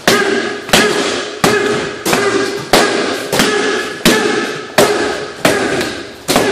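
Heavy percussive hits in a steady rhythm, about three every two seconds and nine in all. Each rings and fades away before the next one lands.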